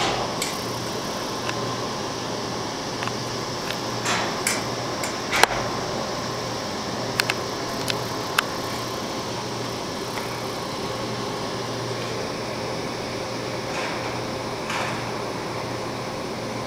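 Carrier Comfort Series central air-conditioner condensing unit running, a steady hum with a low drone. A few short clicks come through the middle, the sharpest about five seconds in.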